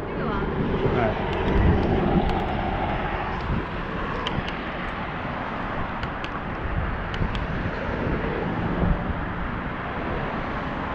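Steady wind rush on the microphone and the rumble of bicycle tyres on pavement as a bicycle rides down a city street, with a few faint ticks.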